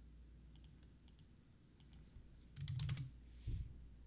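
Computer keyboard being typed on, entering a stock ticker symbol: a few light key clicks, then a louder cluster of clicks with dull low thumps near three seconds.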